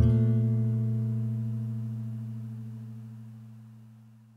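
Final strummed chord on an acoustic guitar ringing out and fading steadily away, the closing chord of the song.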